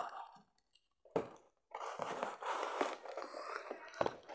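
Cardboard toy box being handled and picked at with scissors: a single sharp click about a second in, then a couple of seconds of scratchy crunching and scraping on the cardboard.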